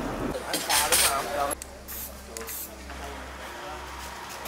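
Faint voices talking, with a few short bursts of hiss about half a second to a second in, over a steady low hum.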